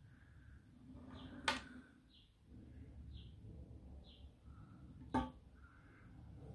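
Quiet handling noise of a 1:22 scale live steam locomotive being pushed along the brass rails of a small turntable, with two light metallic clicks, the second and louder about five seconds in.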